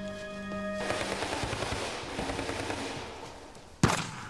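A sustained music chord breaks off under a second in and gives way to a dense crackling noise, then a single sharp, loud gunshot cracks out near the end.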